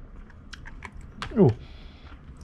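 A few light clicks and taps from handling an open stainless-steel insulated food flask and setting its screw cap down on a desk.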